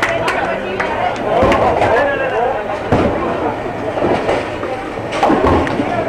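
Bowling alley din: crowd chatter and voices, with several sudden knocks and thuds of bowling balls and pins on the lanes.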